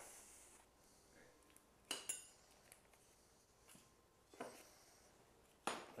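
Near silence with a few faint clinks of kitchenware handled on a counter: a clink with a short ring about two seconds in, and a softer knock a couple of seconds later.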